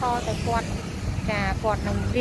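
A person talking, over a steady low rumble.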